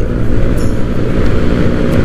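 Honda Vario automatic scooter riding along at road speed: steady engine and road noise mixed with wind rush on the microphone.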